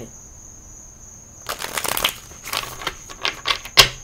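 A deck of tarot cards being shuffled by hand: a quick run of papery flicks and clicks lasting about two seconds, starting midway, ending in one sharp tap near the end.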